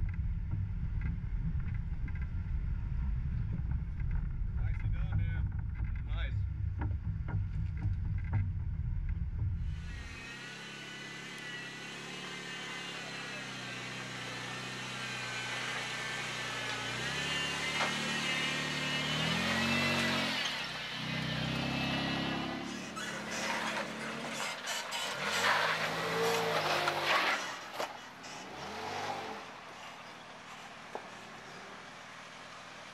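An off-road vehicle driving slowly over a rough dirt trail, heard as a steady low rumble from on board. After a sudden change about a third of the way in, a Jeep engine revs up and down in surges as it crawls up a rock ledge.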